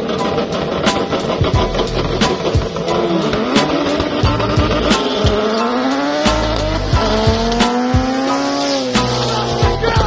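Turbocharged cars racing, engines climbing in pitch as they accelerate hard toward the camera, with short breaks in the climb, then dropping away as they pass near the end. Background music with a steady beat runs underneath.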